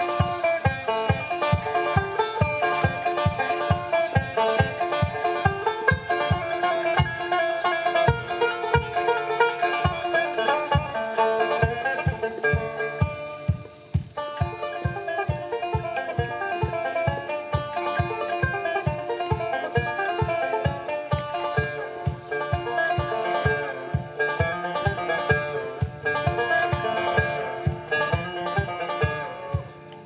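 Five-string banjo played solo in a fast run of picked notes, an instrumental break with no singing. A steady low pulse of about two to three beats a second runs under the notes, and the playing thins out near the end.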